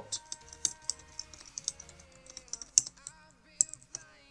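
Computer keyboard typing: a run of irregular keystroke clicks, with a couple of louder taps near the end.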